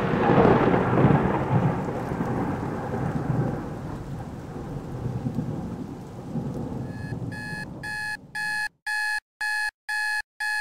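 A rumble of thunder fades out over several seconds. Near the end a digital alarm clock starts beeping steadily, about two beeps a second.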